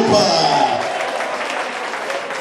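An audience applauding steadily, with a man's amplified voice on a microphone trailing off in the first moment.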